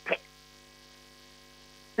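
Faint, steady electrical hum made of several fixed tones, heard in a pause between spoken words.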